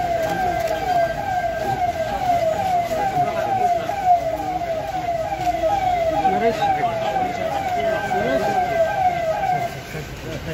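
Vehicle siren sounding a fast repeating falling wail, about three drops a second, over crowd chatter; it cuts off near the end.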